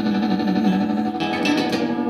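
Acoustic guitar strummed in a live country song, with a held note sustaining under it for about the first second before the strums take over.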